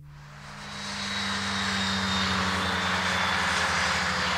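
Propeller aircraft engine droning overhead, swelling over the first second and then holding steady.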